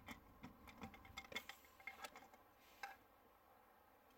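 Faint, irregular plastic clicks and taps as the plug of an OBD2 activation tool is worked into a car's OBD port, thinning out after about three seconds.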